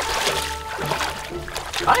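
Rubber boots wading through shallow river water, with irregular splashing and sloshing, under background music.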